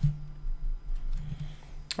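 A dry-erase marker squeaking faintly on a whiteboard as it writes, a thin high squeak that slides in pitch in the second half, over a low steady hum.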